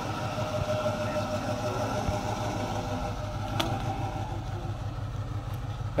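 Cadillac Eldorado's V8 engine running at low speed with a steady low rumble as the car rolls slowly along, with a single short click about three and a half seconds in.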